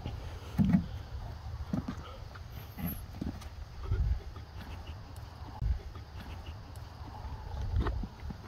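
Wind rumbling on the microphone, with a few dull thumps on dirt; the loudest comes about a second in.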